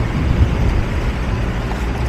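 Steady low rumble of background street noise with no distinct event standing out.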